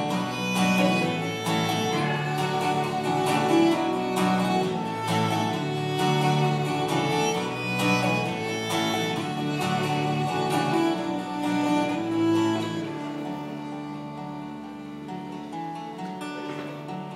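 Live band playing an instrumental break of a folk-rock song, with no singing. It gets quieter over the last few seconds.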